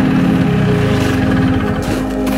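A Polaris Startrak 250 snowmobile's engine idling, under sustained organ-like background music.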